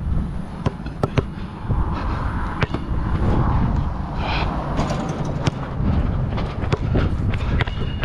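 Wind buffeting the microphone in a steady low rumble, with a rubber basketball (Voit Super Dunk) bouncing on the hard court surface in a series of sharp slaps and knocks.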